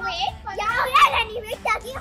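Voices of children and a woman talking and exclaiming playfully.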